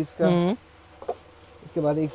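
Speech: a person's voice draws out a short vowel sound, then a pause with low shop background noise and a faint click, and talking resumes near the end.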